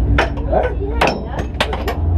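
A quick series of sharp knocks and clacks, the loudest about a second in, as a crew member works at the driver's seat harness inside a race-car cockpit, over a low steady rumble.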